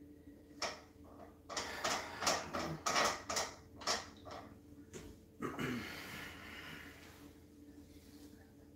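A quick run of sharp clicks and knocks, several a second, from about half a second in to about five seconds, then a short rustle, over a faint steady hum.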